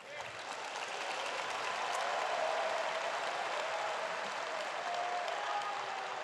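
Large audience applauding, swelling over the first second and then holding steady, with a few voices cheering in it.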